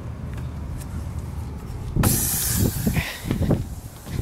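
Outdoor garden-hose spigot turned on: a sudden hiss of water rushing through the valve about halfway in, fading over about a second, followed by a few dull knocks.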